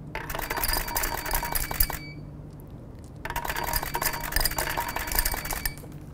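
Jelly beans clattering down a tube into a glass jar: two bursts of rapid, irregular clinks on glass, each about two seconds long, with a short gap about two seconds in.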